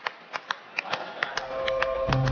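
Sharp mouth clicks, about four a second, made for human echolocation: she uses the echoes to judge whether the bottle in a child's back basket is plastic or aluminium. Soft sustained background music comes in during the second half.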